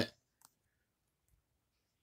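End of a spoken word, then a single faint click about half a second in, then near silence.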